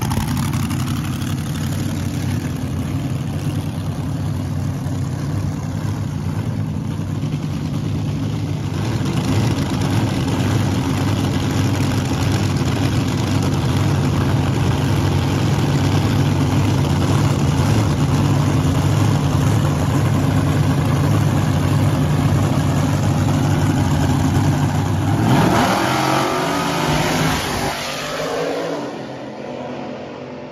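Supercharged V8 engine of a front-engine dragster idling steadily, then launching about 25 seconds in. It gives a loud blast that rises in pitch as the car accelerates down the strip and fades quickly near the end.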